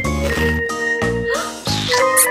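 Cheerful background music with bell-like tinkling notes over a bass line.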